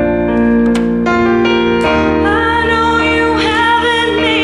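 Woman singing into a microphone over piano accompaniment. From about two seconds in she holds a note with a wavering vibrato.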